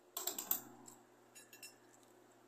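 Light clicks and small rattles of little objects being handled close to the microphone: a quick cluster about a quarter second in, then a few more clicks about a second and a half in.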